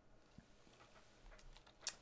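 Near silence: room tone with a few faint small clicks, the sharpest near the end.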